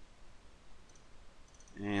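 Faint clicks from a computer mouse and keyboard. A man's voice starts near the end.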